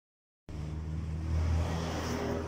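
A low, steady motor hum that begins about half a second in, after silence.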